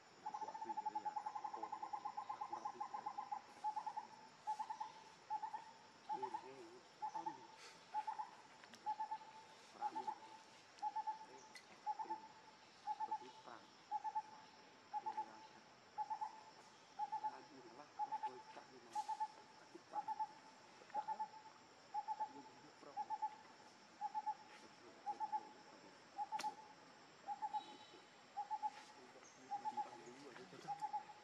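A bird calling a single hoot-like note over and over at an even pace, about one and a half notes a second. In the first few seconds the notes come in a faster run.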